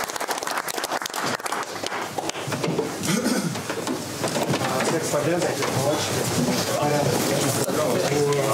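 A group of hockey players clapping their hands. About three seconds in, several men's voices take over, calling out and talking over one another.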